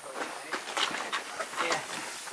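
Cardboard boxes and bags being handled: a run of short scraping and rustling noises.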